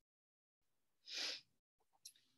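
One short breath drawn in by the speaker about a second in, a brief hiss with dead silence on either side.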